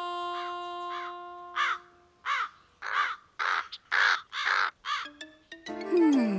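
A crow cawing over and over, about two caws a second, for a few seconds. A held music chord fades under the first caws, and music starts again near the end.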